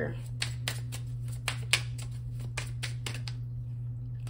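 A tarot deck being shuffled by hand: a quick, irregular run of card slaps and clicks that stops about three seconds in, over a steady low hum.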